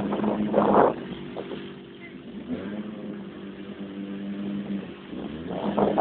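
An off-road quad's engine running in a mud hole. It is louder for the first second, then settles to a steadier, quieter hum, and rises again near the end.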